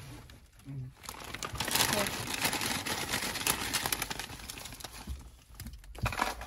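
A crisp packet crinkling for several seconds, loudest about two seconds in, as Doritos tortilla chips are tipped out of it into a plastic tub.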